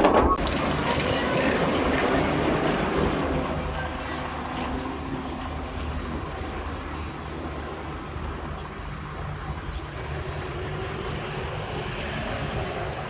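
Diesel engine of a livestock transport truck running steadily, with people talking in the background.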